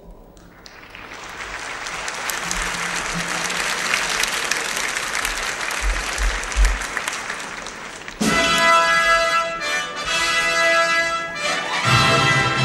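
Audience applause in a large concert hall swells up and continues for about eight seconds. Then an orchestra suddenly strikes up the introduction of the announced song.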